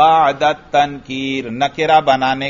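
A man's voice speaking in a drawn-out, chant-like cadence, with some syllables held longer.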